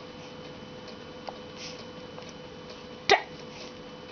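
A quiet room with a faint steady hum, broken about three seconds in by one short, sharp hiccup-like "duh" from a person.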